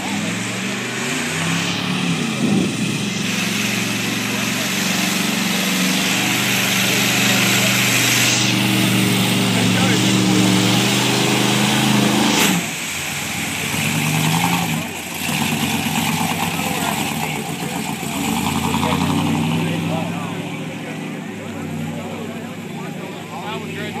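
Pickup truck engine running at high revs under load as it churns through a deep mud pit, its pitch holding and then shifting up and down. About halfway through it drops and the revs become more uneven.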